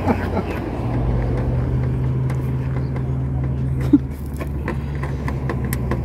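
A car engine idling steadily, with a few light clicks and a short squeak just before four seconds in.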